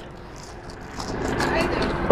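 Chewing on a french fry, with faint short mouth clicks, over a steady low background rumble.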